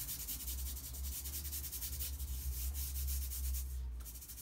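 Rapid back-and-forth rubbing of a paper tape backing over kinesiology tape stuck to the skin of the thigh, a dry scratchy rasp, done to warm and activate the tape's adhesive. It runs over a low rumble and stops just before the end.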